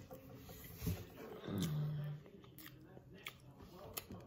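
A person chewing a bite of soft chocolate cake with the mouth closed, with faint clicks and a short hummed "mmm" about a second and a half in that falls in pitch and then holds.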